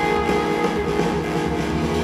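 Live music from a modular synthesizer with a symphony orchestra: a dense layer of sustained, held notes over a low bass.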